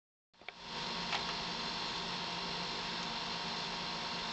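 Steady whir and hum of a single-stage phase-change cooling unit running as it chills the CPU. The noise sets in just under half a second in, with a couple of faint clicks in the first second or so.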